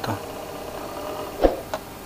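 Small DC motor and cooling fans whirring down as they lose power, the IGBT driving them having been switched off by shorting its gate to emitter. A short knock about one and a half seconds in, then a light click.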